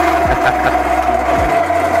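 Benchtop drill press running and drilling a small metal part, a steady whine.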